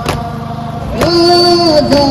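Crowd of mourners beating their chests in unison at about one stroke a second, with a man's voice starting a long held note of a noha about a second in.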